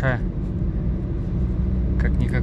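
Steady in-cabin drone of a 1992 Toyota Corolla's 2C four-cylinder diesel engine and road noise while driving in traffic.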